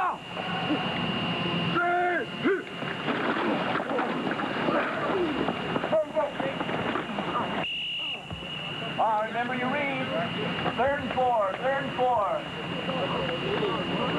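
Voices of football players and coaches shouting and calling out across a practice field, in short bursts about 2 s in and again later on, over steady hiss and a thin high-pitched whine on the old recording.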